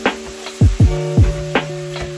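Background music with a beat: held chord notes over deep kick drums, with a snare hit at the start and again about one and a half seconds in.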